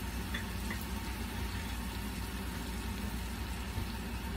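Steady background noise: a low rumble with an even hiss, no distinct events.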